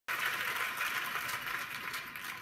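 Steady crackly hiss with no bass in it, played through a car audio speaker setup of Audison APK 165 component speakers.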